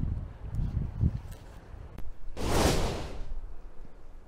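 Low wind rumble on the microphone with scattered handling noise, then one brief loud rustle a little past halfway, as a small clip-on wireless microphone is fastened to a jacket.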